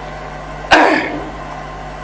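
A man clears his throat with a single short, sharp cough into a close microphone, about two-thirds of a second in, fading within a third of a second. A low steady hum from the sound system sits under it.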